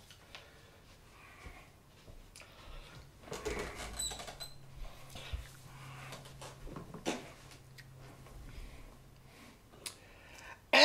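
Faint handling noises in a small room: scattered clicks and rustling, busiest around three to four seconds in, with a sharper click about seven seconds in and a faint low hum through the middle.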